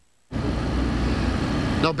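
A brief dropout of near silence, then steady outdoor background noise with a low rumble, like traffic or an idling engine, on an open field microphone.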